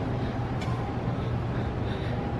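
Steady low hum of a large hall's room tone between remarks, with a faint click about half a second in.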